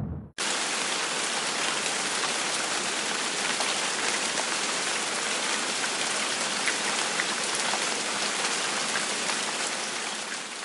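Steady heavy rain, a dense even hiss with fine ticks of individual drops. It cuts in suddenly after a brief silence just after the start.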